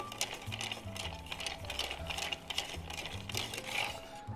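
Bar spoon stirring ice in a metal mixing tin: quick, continuous clinking of ice against the tin, over background music with a steady bass line.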